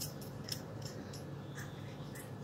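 A few light, irregular clicks over a steady low hum.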